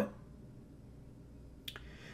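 Faint room tone with a single short, sharp click near the end.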